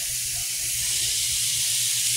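Raw beef burger patties sizzling on the hot grill plate of a Ninja countertop grill, a steady hiss with a low hum underneath.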